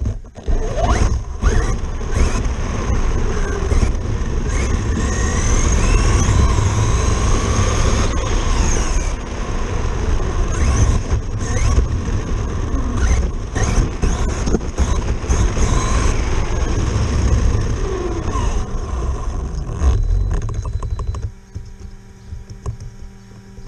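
Traxxas Slash RC truck driven hard on a 4S LiPo battery, heard from its onboard camera: the electric motor whines up and down in pitch with the throttle over tyre and road noise and wind rumble on the microphone. The run stops near the end.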